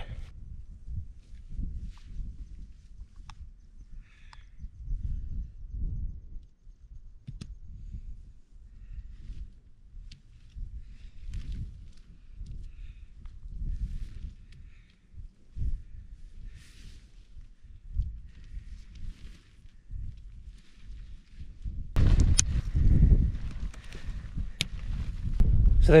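Outdoor ambience of a dome tent being pitched: a fluctuating low wind rumble on the microphone, with scattered faint clicks from the poles and fabric being handled. A louder rush of noise comes in for the last few seconds.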